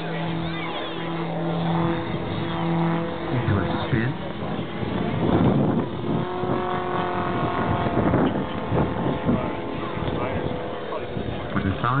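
Engine of a large-scale radio-controlled aerobatic biplane flying overhead. It holds a steady drone for about three seconds, then shifts and wavers in pitch as the plane manoeuvres. Voices murmur in the background.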